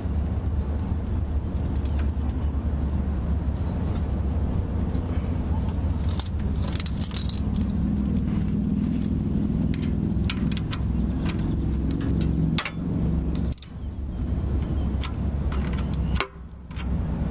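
Socket ratchet clicking and metal tools clinking as a starter mounting bolt is backed out, over a steady low rumble.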